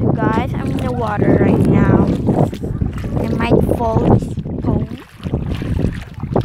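Voices without clear words, heard several times, over a steady low rumble of wind on the microphone and shallow sea water.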